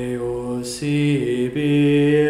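Slow chant-like singing by a low male voice, holding long notes that change pitch about every second, with a soft 's' sound between notes.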